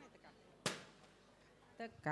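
A balloon bursting once with a single sharp pop about two-thirds of a second in, pricked with a fork.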